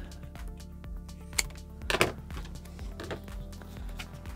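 Background music, with a sharp snip about a second and a half in and a second short sound about two seconds in: scissors cutting through heat-shrink tubing.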